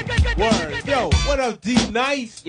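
A hip hop record playing: rapped vocals over a beat with a deep kick drum.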